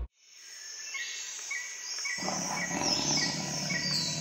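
Outro soundtrack of nature sounds fading in from silence: a steady high insect chorus with a bird chirping about twice a second. About two seconds in, a lower, rough sound joins.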